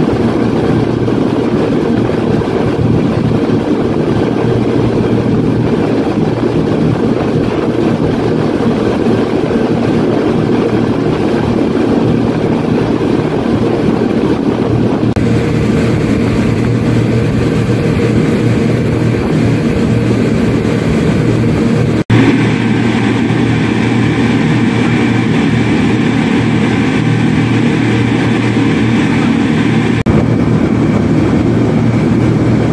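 The six 250 hp engines of a speedboat running at cruising speed: a steady, loud drone mixed with the rush of water and wake. About two-thirds of the way through, the sound cuts out for an instant and then comes back with a slightly different tone.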